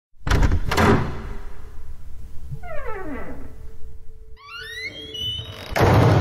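Heavy wooden door sound effects: two deep thuds in the first second, then creaking that glides down and then up in pitch as the doors swing, and a loud boom near the end.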